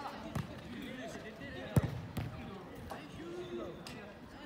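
A soccer ball kicked several times on a dirt pitch, with sharp thuds, the loudest about two seconds in. Players' voices call faintly in the background.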